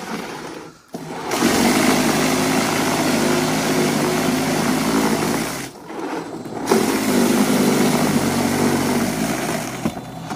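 Toro 60V cordless power shovel's brushless electric motor running, its rotor churning through and throwing snow. It starts about a second in, cuts out for about a second near the middle, then runs again.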